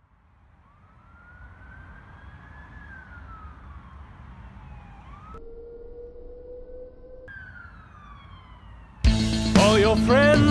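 Intro of a dark synth-pop track: a siren-like wail rising and falling over a low rumble that slowly fades in. About halfway through it cuts abruptly to a steady held tone, then falls away again. About nine seconds in, the full band comes in loudly and the singing starts just before the end.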